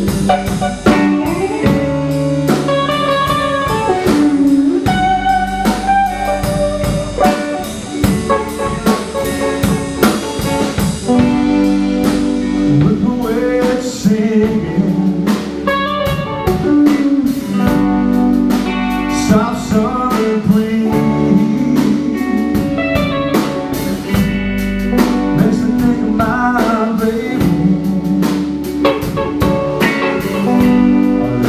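Live blues band playing: two electric guitars, an electric bass and a drum kit, with melodic guitar lines over a steady drum beat.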